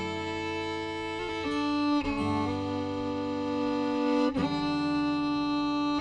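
Fiddle playing a slow ballad melody in long sustained notes over acoustic guitar accompaniment.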